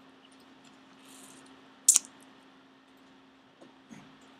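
Quiet room with a steady low hum, broken by one sharp click about two seconds in and a fainter tap near the end.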